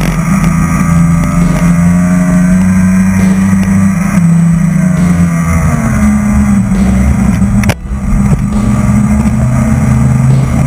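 Speedboat engine running hard at speed, its pitch shifting up about six seconds in. Near the eight-second mark there is a sudden knock and the sound briefly drops before the engine comes back.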